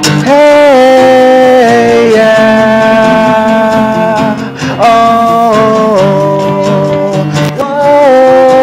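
Live acoustic band music: acoustic guitars strumming under a lead line of long held notes. The lead line steps down in pitch in three phrases, the second starting just under five seconds in and the third near the end.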